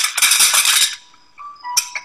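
Movie soundtrack: a loud rattling crash lasting about a second, then fainter held tones.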